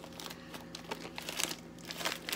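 A plastic bag of frozen peas and carrots crinkling and rustling irregularly as it is handled and tipped.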